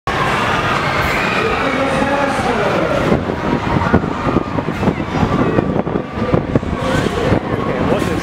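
Wind rushing and buffeting on the microphone of a camera carried round on a spinning chair-swing ride, with overlapping voices in the first few seconds.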